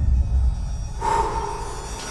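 Trailer sound design: a deep low rumble, joined about a second in by a harsh, screeching swell carrying a steady ringing tone.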